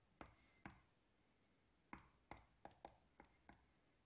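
Faint, sharp clicks as keys of an on-screen calculator emulator are pressed one at a time to type in a formula. Two clicks come in the first second, then a pause, then a quicker, uneven run of about seven.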